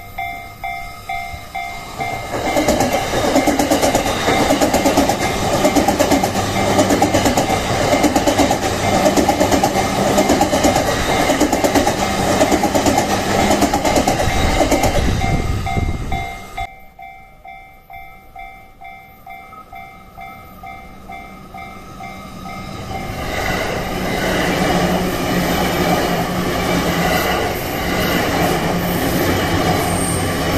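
Japanese level-crossing warning bell ringing in a steady repeating beat, joined about two seconds in by the loud rolling noise of an E235 series Yamanote Line electric train passing close by. The train noise cuts away suddenly about sixteen seconds in, leaving the bell ringing more quietly. Another train's noise then builds from about two-thirds of the way through.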